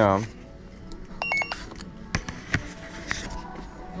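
A brief electronic beep, a few quick pulses of a multi-tone chirp about a second in, followed by two sharp clicks a little later.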